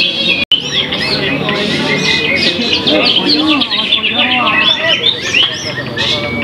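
Many caged songbirds singing at once in a songbird contest: a dense, continuous chorus of overlapping chirps, trills and whistles, with crowd voices underneath.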